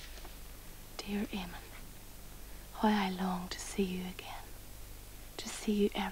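Soft, breathy speech in three short phrases, a voice reading a letter aloud, over a steady low mains-like hum.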